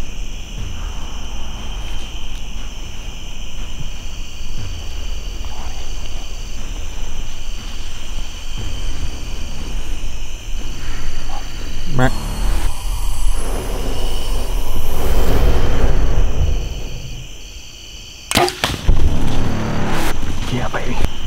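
A bow shot about halfway through: one sharp snap of the released bowstring and arrow, followed by a few seconds of louder rustling noise. Low handling rumble on the microphone runs under it, and loud knocks come near the end.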